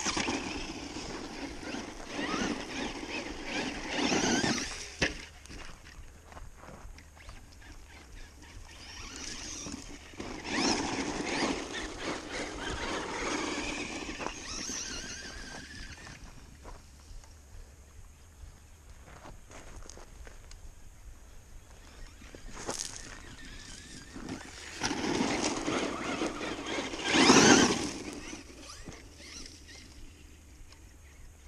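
Traxxas Stampede 2WD RC monster truck driving on a gravel road, its electric motor and tires on the gravel heard in three loud spells of throttle: near the start, in the middle, and loudest shortly before the end.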